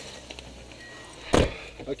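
A car door slams shut once, about a second and a half in, over a low steady hum.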